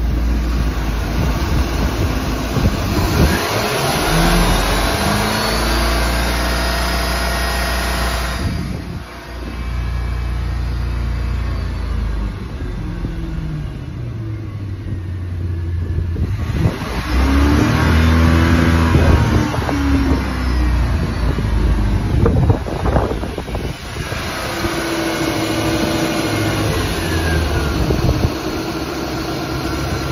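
Mercury MerCruiser 5.7 L (350 cu in) V8 marine engine running, revved up and let back down about four times between stretches of steady idle.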